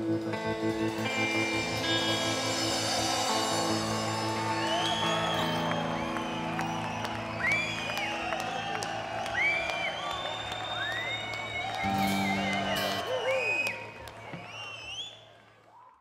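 A live country band holds the song's closing chord while the crowd cheers, whoops and whistles over it. A last accented chord comes about twelve seconds in, then everything fades out.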